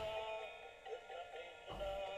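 Soft background music with long held notes and no speech.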